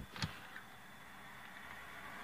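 A single short click about a quarter second in, as the power sunroof settles after its travel, then a faint steady hum in the quiet car cabin.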